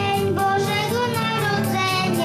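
A young girl singing a Christmas song into a microphone over backing music, drawing out long held notes.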